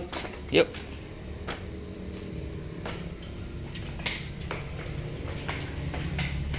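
A toddler's light footsteps in plastic sandals on a concrete floor, a few faint scuffs and taps, over a steady high-pitched whine.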